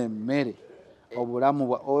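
A man's voice in drawn-out, murmured syllables, with a brief pause about halfway.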